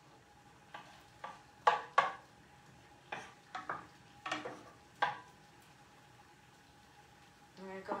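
A cooking utensil scraping and knocking against a stainless steel frying pan while onions are stirred in oil: about nine short clicks and scrapes in the first five seconds, then quiet stirring.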